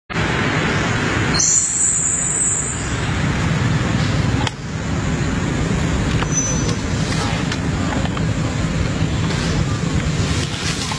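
A steady low rumble of background noise, with a brief high hiss from about one and a half to three seconds in.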